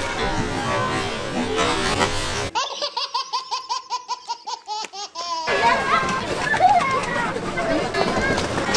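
A baby laughing hard in a quick run of repeated giggles for about three seconds, cut in and cut off abruptly. Before and after it, the busy noise of a crowded ice rink with voices.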